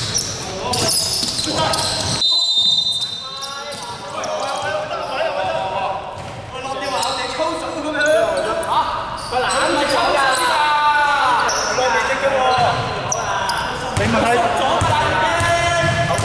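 Basketball game sounds in a large gym: a ball bouncing on the hardwood floor and footfalls in quick impacts, echoing in the hall. A short high whistle blast comes about two seconds in, followed by players' shouting voices.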